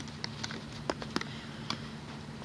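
A few sharp little clicks and taps of a metal loom hook against the plastic pegs of a Rainbow Loom as rubber bands are hooked and stretched, over a steady low hum.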